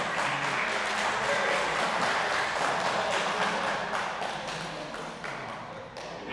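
Applause from a small group of people, an even clapping that fades out near the end.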